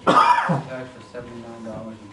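A person gives one loud cough, or clears their throat, lasting about half a second at the start. Quiet murmured speech follows.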